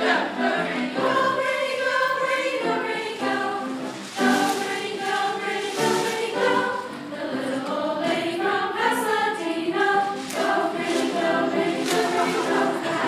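A school chorus singing together on stage, heard from the audience seats of an auditorium.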